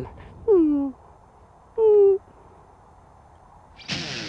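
Two short, high-pitched vocal sounds: the first slides down in pitch, the second is held level about a second later.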